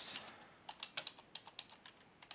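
Typing on a computer keyboard: a run of irregular key clicks, starting just under a second in.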